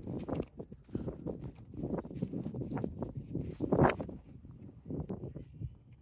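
Footsteps on packed sand with handling noise from a handheld camera, as an irregular series of soft steps and rustles; one louder brief sound comes just before four seconds in.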